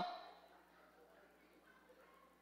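Near silence in a large hall: a spoken word's echo dies away in the first half second, then only faint room tone.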